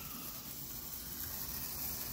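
A Brothers multicolored sparkler burning with a faint, steady hiss.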